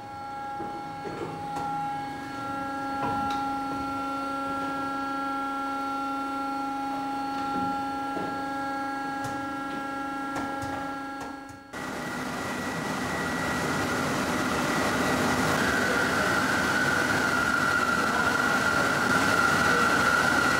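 Underfloor wheel lathe turning a steam locomotive's leading-axle wheels to re-profile flanges that had worn too sharp. For the first twelve seconds the machine runs with a steady hum of several tones. Then the sound changes abruptly to a louder, rougher cutting noise with a steady high whine.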